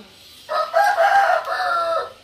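A rooster crowing once: a single loud call lasting about a second and a half, starting about half a second in.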